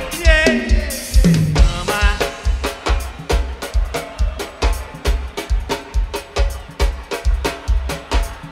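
Live axé band music carried by the drum kit: a steady beat with the bass drum about twice a second, snare and rimshot strokes between.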